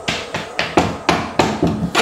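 Rapid, uneven knocking on a door, about seven knocks in two seconds.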